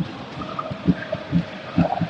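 A bass drum in the stadium stands beating out a steady rhythm, about two deep beats a second, over the constant noise of the football crowd.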